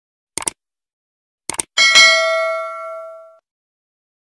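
Subscribe-button animation sound effect: two pairs of quick clicks, then a bell ding that rings out and fades over about a second and a half.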